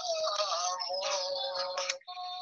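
A voice singing a Spanish love song with acoustic guitar accompaniment, heard through a phone's speaker on a video call, holding long, slightly wavering notes.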